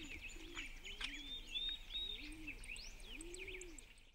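Faint birdsong: small birds chirping and twittering, over a string of low, repeated arched calls.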